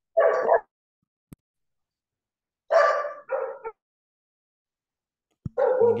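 Dogs barking over a video call's open microphone: three short barks, one near the start and two close together about three seconds in.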